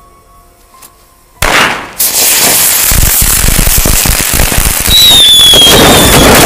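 A string of firecrackers packed into an effigy going off: a sudden loud blast about a second and a half in, then a rapid, continuous run of bangs and crackles that grows louder near the end. A high falling whistle cuts through about five seconds in.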